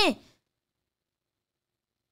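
The last syllable of a woman's speech, falling in pitch and cut off within the first moment, followed by dead silence.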